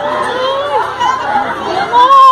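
Excited human voices, high-pitched, talking and calling out over one another in a crowd.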